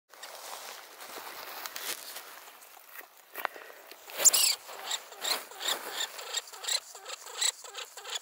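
Norwegian lemming calling in alarm. One loud, shrill squeak comes about halfway through, followed by a run of short squeaks about two or three a second, the calls of a frightened lemming.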